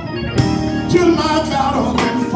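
Gospel song: a man's voice singing through a microphone over organ accompaniment.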